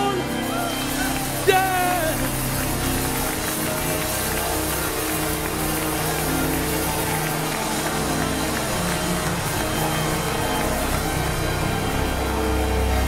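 Church band accompaniment of a gospel choir playing on steadily as the song winds down, with a short wavering vocal cry about a second and a half in.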